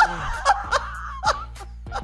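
Several people laughing together, loudest at the start and dying down after about a second and a half.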